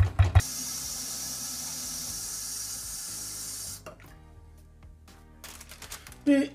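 Tap water running in a steady hiss for about three seconds, cutting off, then a few faint crinkles of paper.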